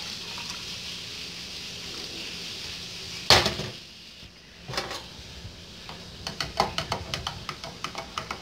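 Water poured from a stainless steel cup into a plastic cup, then the steel cup set down with one sharp clank on a stainless steel sink drainboard a little over three seconds in. From about six seconds in, a spoon stirs the drink with quick clicks against the plastic cup.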